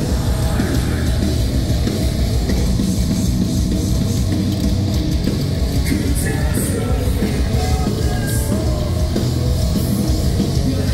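A metalcore band playing live at full volume: distorted electric guitar, bass guitar and drum kit in a dense, steady wall of sound.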